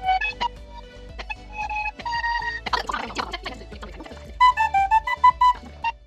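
A beginner's wooden keyed flute playing short, uneven clusters of notes with breathy noise between them, then a quick run of short notes near the end.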